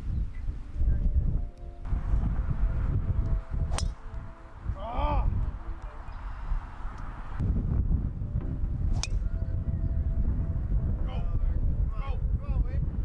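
Wind buffeting the microphone with a steady low rumble, broken by two sharp clicks, about four seconds in and about nine seconds in, and a brief voice around five seconds in.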